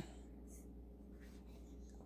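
Near silence: room tone with a faint steady low hum and one faint, brief brush about half a second in.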